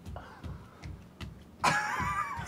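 Faint room noise with a few soft knocks, then near the end a man's loud vocal outburst.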